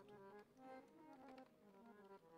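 A harmonium played softly, a slow melody of held reedy notes stepping from one pitch to the next.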